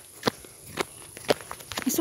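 Footsteps through tall grass, four steps about half a second apart.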